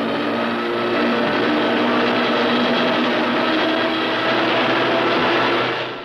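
Steady drone of a four-engine propeller bomber's engines in flight, fading out near the end.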